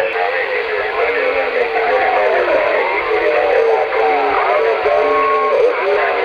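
Amateur single-sideband voice transmission received on a homebrew direct-conversion phasing SSB receiver: a continuous thin, narrow-band voice, like a telephone, with static behind it.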